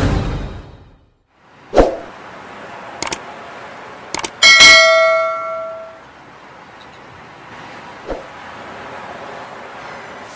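Sound effects of a subscribe-button animation: a sharp hit, a few quick clicks, then one loud bell ding that rings on for about a second and a half. A softer hit follows near the end, as the intro music fades out at the start.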